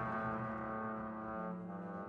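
Trombone holding a long, steady note in contemporary chamber music with cello and double bass. Near the end the trombone note dies away and a lower bowed string note takes over.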